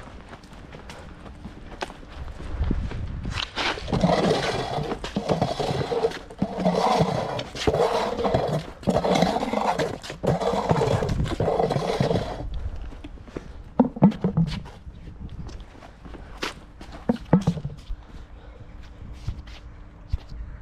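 Footsteps on concrete paving stones while plastic traffic cones are set down over drain covers. For about eight seconds in the middle a loud, rough, uneven noise with a pitch that rises and falls covers everything else.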